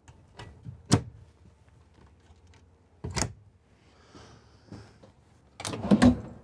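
Overhead cabinet's lift-up door pushed shut, closing with a sharp click about a second in. A second single knock follows about two seconds later, then light rustling and a clunk near the end.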